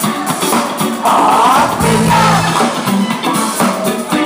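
A live band playing an upbeat Latin-style number on conga drums, horns and electric guitar, loud and steady, with a held, wavering note about a second in.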